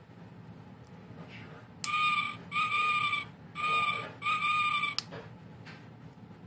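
LED owl keychain toy's tiny speaker playing its electronic hoot: four short, steady hoots in two pairs, each about half a second long. A sharp click comes just before the first hoot and another shortly after the last.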